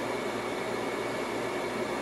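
Steady background hum and hiss with a faint, thin high tone running underneath, and no distinct event.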